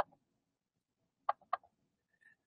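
Three short clicks against a quiet room: one at the start, then two in quick succession a little over a second in.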